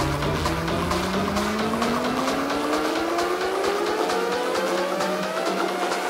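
Electronic dance music build-up: a synth tone sweeping steadily upward in pitch over steady, evenly repeated drum hits, with the deep bass thinning out after a couple of seconds.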